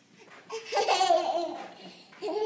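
A toddler laughing: one high-pitched laugh starting about half a second in and trailing off before the end.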